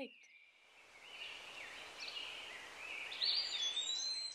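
Birds chirping over a steady hiss of outdoor background noise that swells about a second in, the chirps growing more prominent toward the end.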